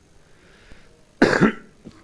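A man coughs once, short and loud, close to the microphone about a second in, after a quiet pause.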